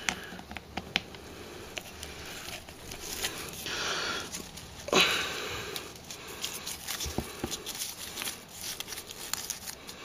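Hands rustling and scraping in loose substrate while artificial plants are pushed in, with a few brief swishes and scattered small clicks and knocks.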